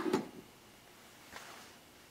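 A brief rubbing knock right at the start as the calibration weight is set on the balance pan and the gloved hand withdraws past the plastic breeze break, then quiet room tone.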